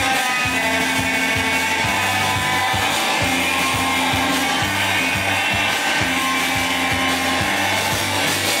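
Live rock band playing loudly: dense, distorted electric guitars over held low notes and a steady drum beat of about three hits a second.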